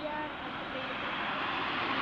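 Steady noise of road traffic from cars on the street, with faint voices of people talking over it.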